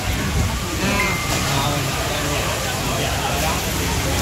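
A steady hiss from a hotpot of chicken broth simmering on a tabletop burner, with indistinct talk in the background.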